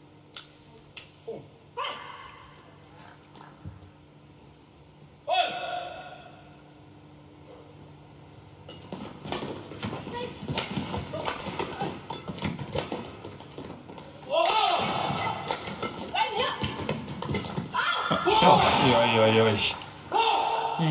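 Badminton doubles rally: a quick run of racket strikes on the shuttlecock with squeaking court shoes starts about nine seconds in, and players' shouts grow louder toward the end. Before it, a few isolated clicks and two short shouts sound between points.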